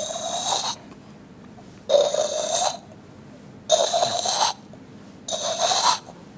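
A mimicry artist's mouth-made imitation of a mechanical sound: four harsh, rasping bursts, each under a second long, repeating about every two seconds.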